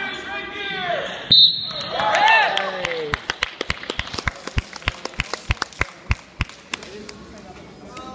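Voices shouting, then a short, shrill referee's whistle blast about a second and a half in, the loudest sound in the stretch. After that comes a run of evenly spaced thuds, about three a second, for some three seconds.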